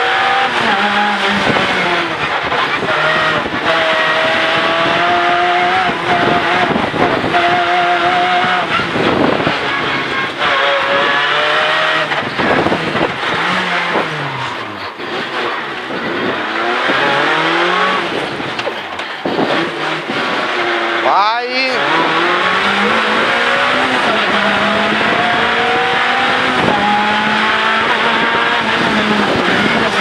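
Renault Clio N3 rally car's 2.0-litre four-cylinder engine heard from inside the cabin, driven hard through the gears on track. The engine note climbs and then drops repeatedly with each shift and each lift for a corner, with a quick rev blip a little past two-thirds of the way through.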